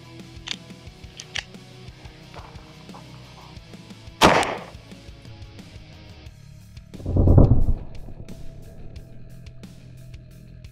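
A single 9mm pistol shot about four seconds in, over background music. About three seconds later comes a deeper, longer boom: a slowed-down replay of the bullet hitting a stack of pine 2x6 boards and breaking a piece off.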